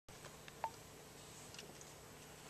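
Quiet room tone with a few faint clicks and one short, sharp beep-like blip about two-thirds of a second in.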